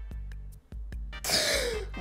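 A man's breathy, wheezing laughter in short irregular gasps. About a second in, it ends in a loud exhale with a falling pitch, a sigh as the laughing fit winds down.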